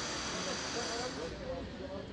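Street ambience: several people's voices talking indistinctly in the background over a steady hiss, which drops away a little after halfway.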